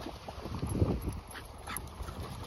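A dog vocalising briefly, a couple of short sounds past the middle, over wind rumbling on the microphone.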